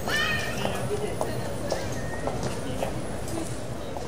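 Street ambience: a steady background hum with sharp footstep clicks on brick paving about twice a second, and brief voices at the very start.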